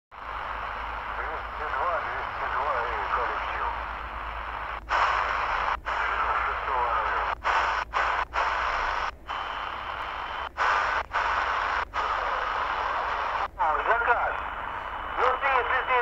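Shortwave receiver's speaker giving steady static on the 3 MHz band, with distorted voice transmissions coming through near the start and again near the end. The sound cuts out briefly about a dozen times as the receiver is tuned from frequency to frequency.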